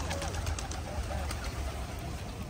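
A few faint, short calls from a greylag-type goose over a low steady rumble.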